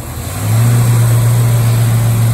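1969 Camaro's 350 V8 running, its exhaust note stepping up in level about half a second in and then holding steady and smooth.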